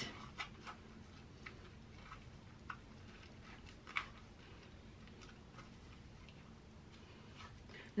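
Faint, scattered soft clicks and squelches of fingers pressing wet grated potato through a plastic strainer over a glass bowl to squeeze out the juice, with one louder click about four seconds in.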